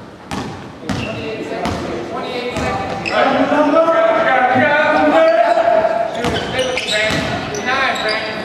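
A basketball bouncing a few times on a wooden gym floor, then loud, wordless shouting and calling voices that echo in the hall and are loudest in the middle.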